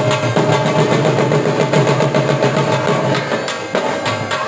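Saraiki jhumar dance music: fast, steady dhol drumming under a sustained, held-note melody line.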